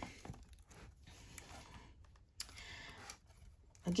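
Faint rustling and a few soft taps of heavy cardstock scrapbook album pages being turned and handled.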